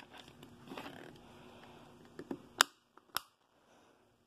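Soft handling rustle from a hand-held phone being moved, then two sharp clicks about half a second apart in the second half, the first the louder.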